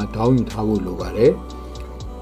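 A voice talking over background music with a ticking beat.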